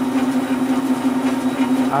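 Belt-driven generator test rig, a washing-machine-type stator on a trailer drum hub spun at 400 RPM, running under load and feeding a grid-tie inverter with a steady howl at one pitch.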